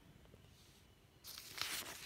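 Glossy newspaper coupon-insert page being turned: a short burst of paper rustling that starts a little over a second in and lasts about a second.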